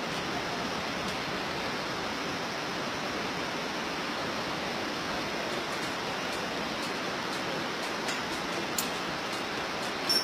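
Steady rushing noise of a fast mountain river, with a few faint ticks in the second half and one sharper click near the end.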